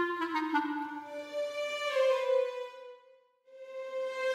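Background music: a slow melody of long held notes with a woodwind-like tone, which stops for about half a second near the end before starting again.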